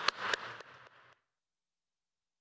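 Hand claps close to the lectern microphone, about four a second, with the audience's applause beginning behind them; the sound then cuts off to dead silence about a second in.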